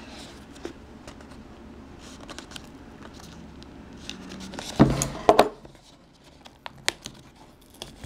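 Handling of a small cardboard product box and its packaging: faint rustling, then two loud sharp knocks with a brief scrape about five seconds in, followed by a few light clicks.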